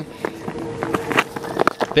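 Cricket ground ambience: crowd murmur with a few sharp knocks, the last and loudest being the crack of a cricket bat striking the ball near the end, a hit that goes for six.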